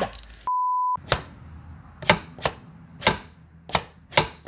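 A steady single-pitch censor bleep, about half a second long, with all other sound cut out around it. Then a run of sharp, separate clicks, unevenly spaced: the Remington 700's steel bolt being worked in the action.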